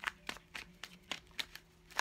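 Tarot cards being handled and shuffled in the hand: a run of light, irregularly spaced clicks and snaps of card edges.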